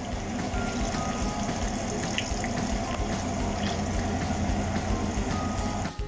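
Potato chunks frying in oil in a pan, a steady sizzle, with a low steady hum underneath.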